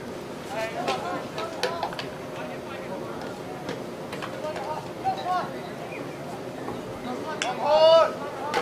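Voices calling out across a lacrosse field: scattered short shouts and chatter from players and onlookers, with a louder shout near the end.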